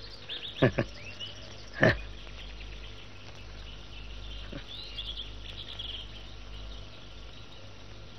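Faint high chirps and trills of outdoor animal ambience over a steady low hum, with a few short sharp sounds in the first two seconds.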